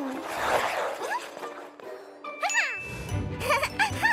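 Cartoon sound effects: a soft swish early on, then a bright tinkling jingle with falling notes, leading into bouncy background music with a bass line that starts near the end.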